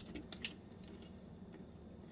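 Dehydrated maraschino cherry pieces clicking lightly together in a hand: three or four faint ticks in the first half second, the loudest about half a second in. The hard, clicky sound is the sign of well-dried fruit.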